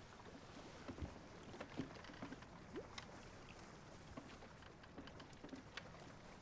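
Quiet open-sea ambience around a small wooden boat: water lapping against the hull, with scattered light ticks and knocks.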